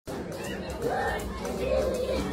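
Indistinct chatter of several people talking in a room, with no clear words.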